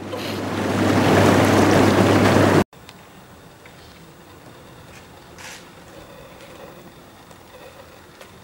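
Air bubbles churning the water of an inflatable hot tub, a loud, even rush over a steady blower hum. It swells over the first second and stops abruptly about two and a half seconds in, leaving only faint background noise.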